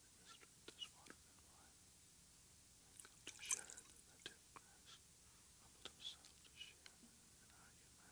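Faint clinks and ticks of small glass cruets being handled on the altar and a little liquid poured into the chalice, with the loudest clatter about three and a half seconds in.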